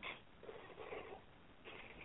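Near silence in a pause between speakers, with a few faint, brief murmurs.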